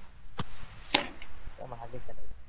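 Two sharp clicks about half a second apart, followed near the end by a brief, faint voice.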